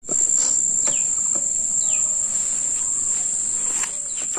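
A steady high-pitched insect trill with a few short, falling bird chirps over it, twice clearly.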